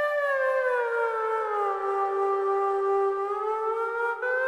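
Background film music: a sustained flute-like wind tone slides slowly down in pitch over the first two seconds, holds low, then climbs back up near the end.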